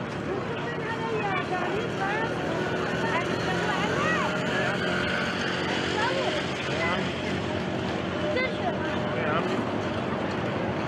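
Crowd ambience: many voices chattering and calling over a steady rumble of road traffic.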